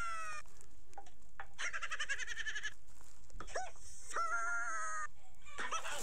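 A run of about five high, wavering, goat-like bleats and squealing cries, some gliding in pitch and the longest trembling for about a second.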